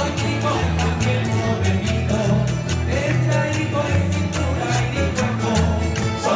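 A Canarian folk string ensemble of acoustic guitars and lutes plays a steady strummed rhythm, with bass notes changing under it and a plucked melody line over it.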